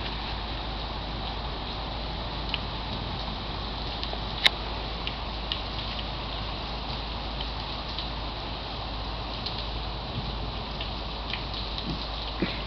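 Steady patter of rain, with scattered faint ticks and one sharper click about four and a half seconds in.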